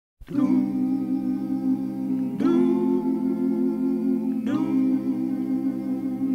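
Background music: a held, humming chord of steady tones that is struck afresh about every two seconds.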